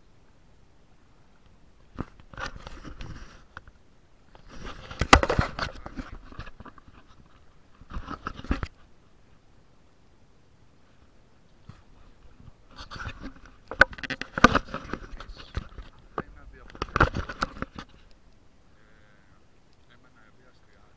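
Indistinct, muffled voice heard in several irregular bursts with pauses between.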